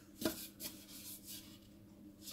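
Faint handling of a square of MDF board: one light knock about a quarter-second in, then a few soft scuffs as it is lifted.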